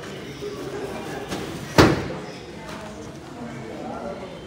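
A single sharp bang about two seconds in, over a steady background of people's voices.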